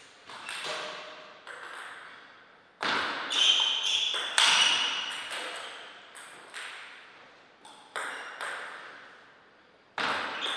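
Table tennis ball clicking off the bats and the table in a short rally, with the loudest, fastest hits about three to five seconds in. A few lighter ball bounces follow near the end.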